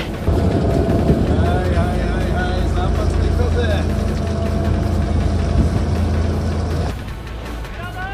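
Boat engine running with a steady low drone and faint voices over it; the drone drops away about seven seconds in.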